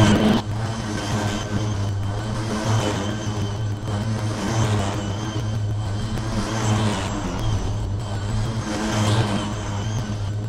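A 21-inch battery-powered push lawn mower running steadily as it cuts thick, wet, clumped grass. It makes a constant low hum with a higher whir above it, swelling slightly now and then.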